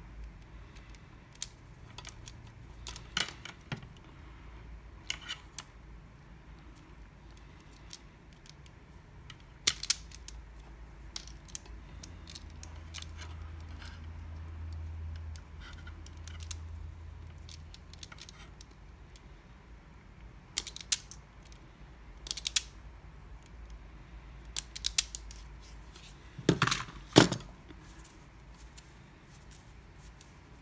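Scattered clicks and snaps of hand work on mains wiring: a Kincrome automatic wire stripper clamping and stripping cable, and small plastic plug-housing parts being handled. The loudest pair of snaps comes near the end.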